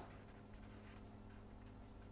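Faint scratching of a felt-tip marker pen writing on paper.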